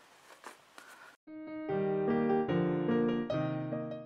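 Solo piano music, a brisk piece with short changing notes, beginning about a second in and cutting off abruptly at the end; the first second holds only a few faint sounds.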